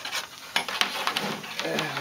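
Coax cable being handled and pulled: a run of light clicks and rustles.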